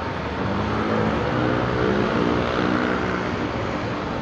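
Roadside traffic noise, with a motor vehicle's engine passing close by that is loudest about two seconds in, over steady road and tyre noise.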